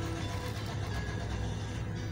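Steady low background hum and rumble, like distant traffic, with no distinct event.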